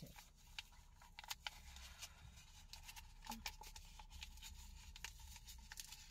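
Near silence: a few faint crinkles and clicks of a foil stick packet of pre-workout powder being handled, over a low steady hum.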